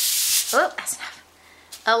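Aerosol cooking spray hissing out of the can onto aluminium foil, a short burst that cuts off about half a second in.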